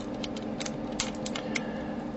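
Small hard-plastic clicks and taps from a vintage G1 Snarl Transformers toy being handled, a quick scatter of light clicks mostly in the first second and a half.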